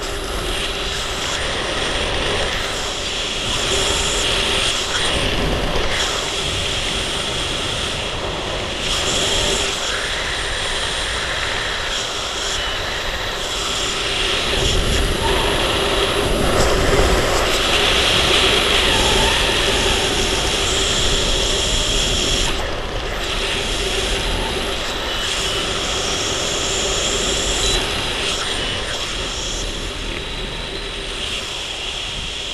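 Steady rush of air over the microphone of a skydiver's camera during descent, swelling a little louder in the middle.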